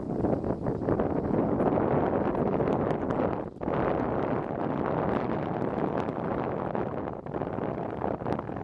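Wind buffeting the microphone: a steady rushing that lulls briefly about three and a half seconds in.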